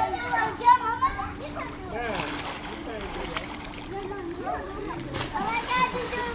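Water splashing in a swimming pool as swimmers dive, surface and move through the water, with high-pitched voices calling out near the start and end.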